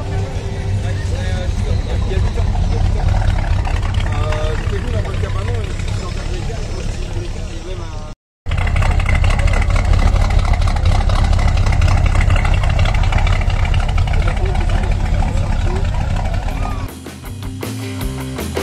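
Classic Buick sedan's engine idling at the tailpipe with a steady low exhaust rumble, under voices and music. The sound cuts out briefly about eight seconds in, and near the end guitar rock music takes over.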